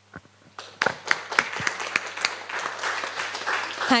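Audience applauding, beginning about a second in and continuing as dense, even clapping.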